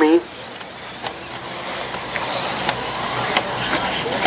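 Electric 1/8-scale RC buggies running on a dirt track: a whine from the motors and drivetrains that rises in pitch and grows louder, over tyre-on-dirt noise, with a few sharp ticks.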